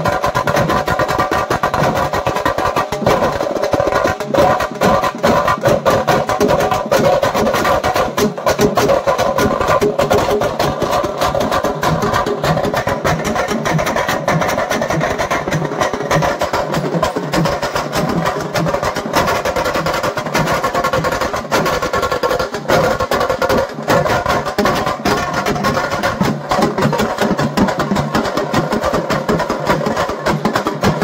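Procession drums played fast and loud, a continuous run of rapid strokes with steady music layered over them.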